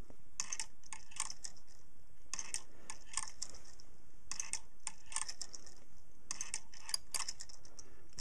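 Hipp-toggle pendulum clock mechanism clicking: a burst of light metallic clicks about every two seconds as the swinging pendulum carries the toggle over the dog.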